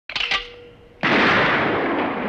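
A few short clicks, then about a second in a Browning Auto-5 shotgun goes off, its report hanging on and fading over more than a second.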